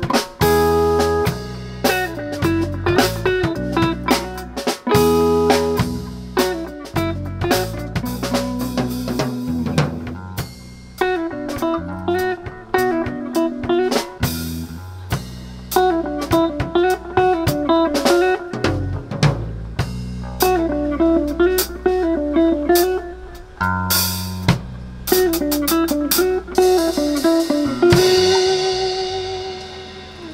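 Live electric guitar, electric bass and drum kit playing an instrumental tune: a repeating guitar riff over bass and snare-driven drums. Near the end a final chord rings out and fades.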